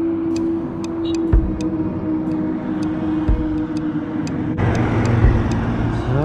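Motorcycle engine running steadily at cruising speed with road and wind noise. About four and a half seconds in, the sound turns suddenly louder with a deep rush as a heavy dump truck goes past.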